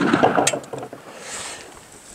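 The report of a 12-gauge shotgun slug shot echoing and dying away over about a second and a half, with one sharp crack about half a second in.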